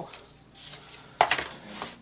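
Cardstock strips being handled and laid on a work mat: a soft rustle, then one sharp tap a little over a second in.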